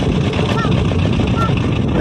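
Fishing launch's engine running steadily while the boat is under way.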